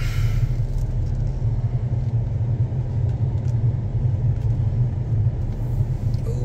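Steady low rumble of a car driving slowly, engine and road noise heard from inside the cabin.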